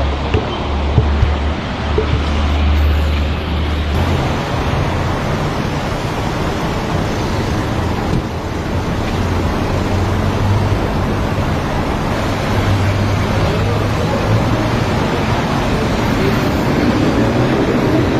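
Steady outdoor street noise: traffic running in the background, with a low rumble underneath. The background changes abruptly about four seconds in, and then carries on evenly.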